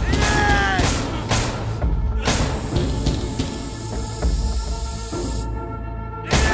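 Tense background music with several heavy bangs of fists and a struck object on a metal door in the first second and a half. A steady hiss then runs from about two seconds in to near the end.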